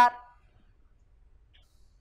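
A voice trailing off at the end of its last word, then near silence for about a second and a half.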